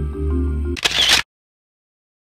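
Background music cuts off under a camera shutter click less than a second in, and dead silence follows. The shutter sound is an edit effect that brings in a group photo.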